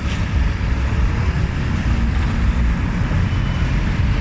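Steady low rumble of street traffic outdoors, with wind on the microphone.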